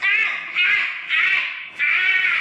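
Very high-pitched, cartoonish laughter sound effect in repeated bursts, about two a second.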